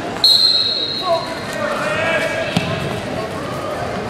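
Referee's whistle blown once: a single high-pitched blast about a second long that starts the wrestling bout. Voices follow, with a short knock about two and a half seconds in.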